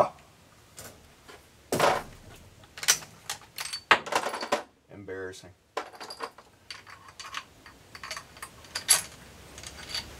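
Scattered metallic clicks and clinks of a Mosin-Nagant bolt-action rifle being worked by hand, with cartridge brass clinking, as the action is cleared after a misfire from a light firing-pin strike, which the owner puts down to a weakened firing pin spring.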